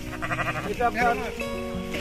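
Garol sheep in a grazing flock bleating, several wavering calls overlapping.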